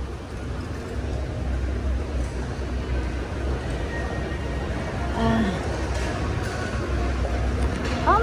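Moving escalator running with a steady low rumble, under the background noise of a busy shopping mall and a brief voice about five seconds in.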